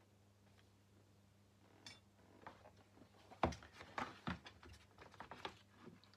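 Small objects being handled and set down on a workbench: a few scattered clicks and knocks from about two seconds in, the loudest just past halfway, over a faint steady hum.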